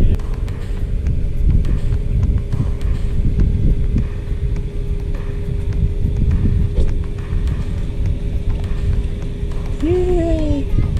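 Wind buffeting the microphone outdoors, a low irregular rumble rising and falling in gusts, with a steady low hum underneath.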